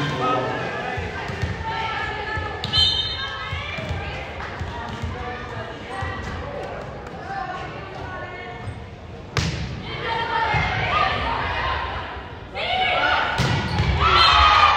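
A volleyball being struck in a gymnasium: a sharp smack of a hand on the ball about nine seconds in, then more hits and shouting as a rally gets going near the end. Players' calls and spectators' chatter run underneath, echoing in the hall.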